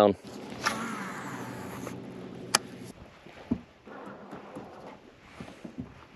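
Low steady hum of a boat's electric trolling motor, fading out after about three seconds. A sharp click comes midway and a small knock follows.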